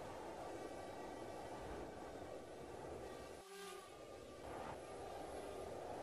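A faint, steady low rumble of outdoor background noise, with a brief dropout about three and a half seconds in.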